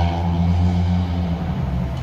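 Vehicle engine on a city street running with a steady low drone, easing off after about a second and a half.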